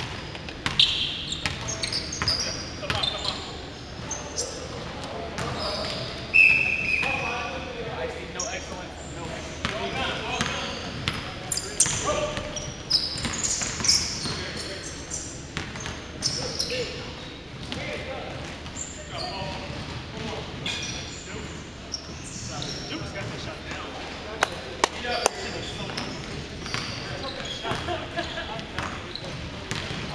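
Basketball game in a gym: the ball bouncing on the hardwood court, with players' voices calling out. A brief high-pitched tone sounds about six seconds in and is the loudest moment.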